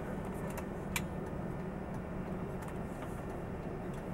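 Steady engine and road rumble heard from inside a moving tour coach, with a couple of light clicks about a second in.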